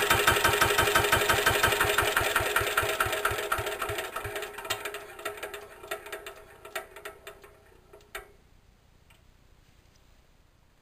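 Lister LT1 single-cylinder diesel stationary engine running down after its fuel is cut off with the stop lever. The steady beat of its firing strokes slows and fades over several seconds, ending in a few scattered last knocks, and the engine comes to rest about eight seconds in.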